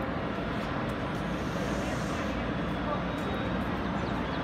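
TRA EMU500 commuter train pulling slowly into a station platform, a steady low rumble of its motors and wheels.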